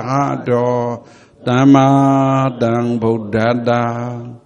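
Buddhist monk chanting Pali in a low, steady reciting tone, syllables held long on nearly one pitch. There is a brief breath pause about a second in.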